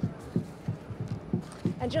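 A quick, uneven series of low, dull thuds, about four a second, stopping as a voice begins near the end.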